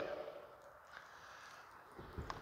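Quiet room tone with only faint ticks, as the last word of speech fades at the very start.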